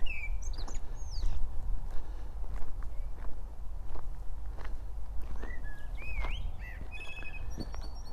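Footsteps crunching on a gravel track at a steady walking pace, with birds chirping and whistling, mostly just after the start and again in the last few seconds.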